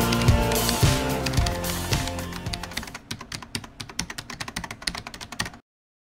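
Background music with a steady beat, fading out over the first three seconds, giving way to a run of rapid light clicks like typing keys that stops abruptly just before the end.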